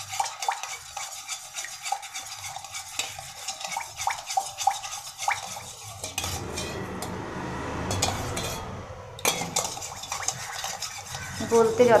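A spoon stirring a liquid in a stainless steel pot, clinking and scraping repeatedly against the sides, with a stretch of steadier swirling noise around the middle.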